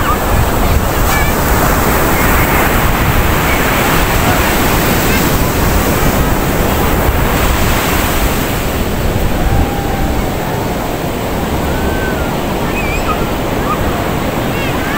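Ocean surf breaking and washing up onto a sandy beach, a steady rushing noise that eases slightly about two-thirds of the way through.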